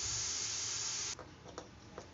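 Steady hiss from a kadai of gravy cooking on a gas burner, which cuts off abruptly about a second in.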